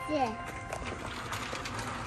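Low supermarket background noise with a few faint clicks, after a short snatch of voice at the start.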